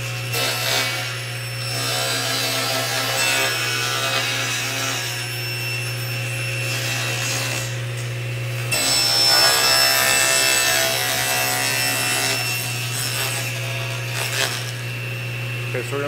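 Table saw running, its blade cutting through the wooden base and fence of a crosscut sled as the sled is pushed forward, the first cut through the sled's fence. The steady motor hum sits under the cutting noise, which grows louder about halfway through.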